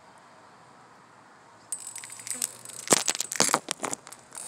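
A spray bottle misting fragrance over journal pages: a rapid run of short hissing spritzes starting just under two seconds in, with a few knocks from handling.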